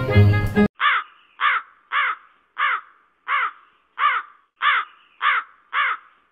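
A crow's caw repeated about nine times at an even pace, a little under two a second, over otherwise dead silence: an edited-in sound effect. Music cuts off abruptly just before the caws begin.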